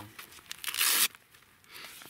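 Hook-and-loop strap on a dog's blaze-orange hunting vest ripped open, one sharp tearing burst about half a second long, followed by a softer rustle of the vest near the end.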